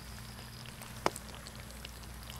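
Sugar syrup boiling hard in a wok, with a scatter of small pops and crackles over a low steady hum and one sharper click about a second in.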